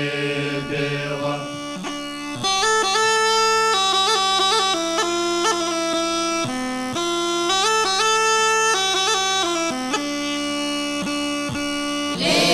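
Rhodope kaba gaida (large Bulgarian bagpipe) playing a folk melody over its steady drone, an instrumental break between sung verses; the melody gets louder and busier about two seconds in.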